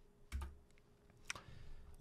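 Two faint, sharp clicks of a computer key or button, about a third of a second in and again past the middle, as the lecture slides are advanced, with a faint hiss near the end.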